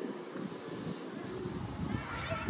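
Outdoor city ambience: a low, unsteady rumble with faint distant voices over it.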